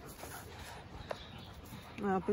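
A dog making a faint, brief whimper about a second in, over quiet woodland.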